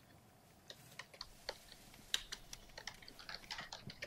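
Faint typing on a computer keyboard: irregular light key clicks that start under a second in and grow busier from about two seconds.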